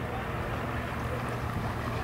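Distant outboard motor idling with a steady low hum, just started after repeated failed attempts to get it running.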